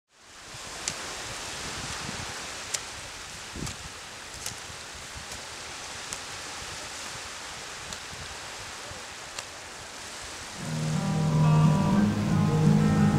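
Steady wash of gentle surf on a beach, with a few faint scattered clicks. About eleven seconds in, a low droning musical tone starts and grows louder.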